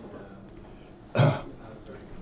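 A man clears his throat with a single short, loud cough just over a second in.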